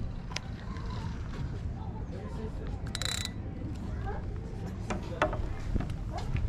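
Spinning rod and reel being handled: scattered clicks and one short, sharp rasp about three seconds in, over a steady low rumble of wind on the microphone. Faint voices are heard.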